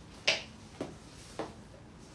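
Three sharp clicks about half a second apart, the first the loudest.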